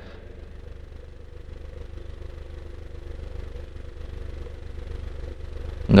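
A steady low mechanical hum in the background, like an engine or motor running, with no clear strokes or changes in pitch.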